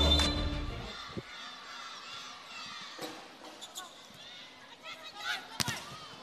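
Background music fading out in the first second, then arena crowd noise with a few sharp thuds of a volleyball being hit, the loudest just before the end.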